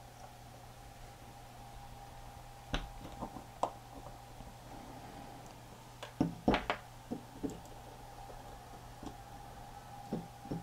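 Faint metal clicks and scrapes from a small tool prying at the pressed-on retainer on a VCR capstan motor shaft. There are a few scattered clicks at first and a louder cluster a little past the middle, over a faint steady hum.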